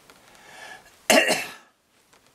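A man coughs once, a short sharp burst about a second in.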